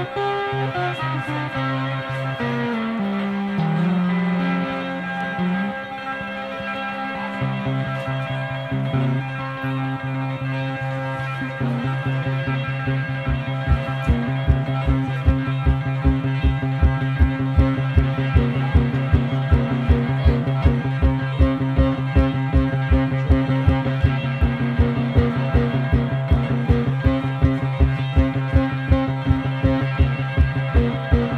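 Cigar box guitar playing an instrumental blues passage: a shifting melodic run in the first few seconds, then a repeated low droning note. From about halfway through, a steady driving pulse of about two beats a second.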